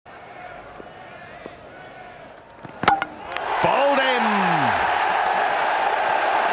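A quiet crowd hum, then about three seconds in a few sharp cracks as the cricket ball hits the stumps, followed by a cricket crowd erupting into loud, sustained cheering with a voice shouting over it.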